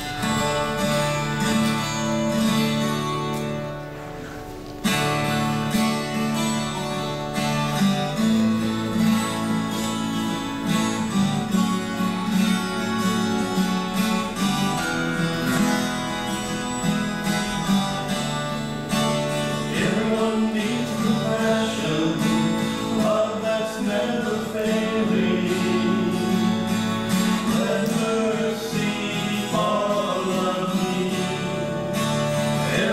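Acoustic guitar strumming a song's introduction, with a short break about four seconds in. Men's voices come in singing from about twenty seconds in.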